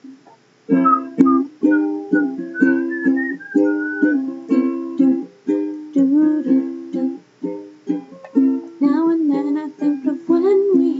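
Acoustic stringed instrument strummed in a steady rhythm of chords, the intro before the singing starts. A faint, wavering high melody line sits over it a couple of seconds in.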